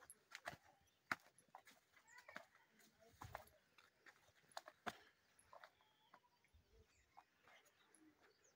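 Near silence, broken by scattered faint clicks and knocks at irregular intervals, the sharpest about a second in.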